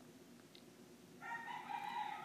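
After near silence, a faint, drawn-out animal call begins about a second in, held at a steady pitch.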